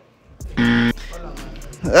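A short, loud buzzer-like electronic tone lasting under half a second, edited into the soundtrack, followed by music with a deep steady bass. A voice comes in near the end.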